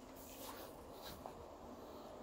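A few faint, short scratchy rustles, about half a second apart, from monkeys moving and handling food at a table.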